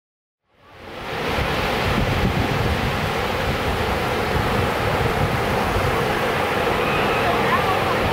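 Ocean surf washing onto a beach, steady, with wind buffeting the microphone. It fades in from silence in the first second.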